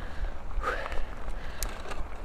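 Mountain bike rolling along a packed dirt track: steady tyre and wind rumble on the handlebar-mounted camera's microphone, with a sharp click about one and a half seconds in.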